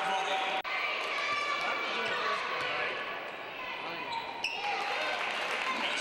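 Basketball game sound in a gymnasium: a ball bouncing on the hardwood floor among crowd voices echoing in the hall. A momentary dropout of the whole sound about half a second in, and a sharp click a little after four seconds.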